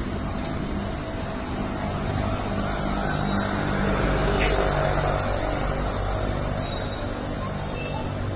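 Motor vehicle engine running nearby with street traffic noise, a steady low rumble that swells a little around the middle.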